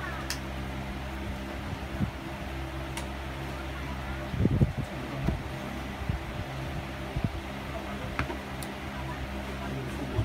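Steady hum of a room fan running, with soft taps of cards and deck boxes being handled on a play mat. A brief cluster of louder low knocks comes about four and a half seconds in.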